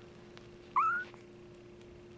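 A young kitten gives one short, rising mew about three-quarters of a second in.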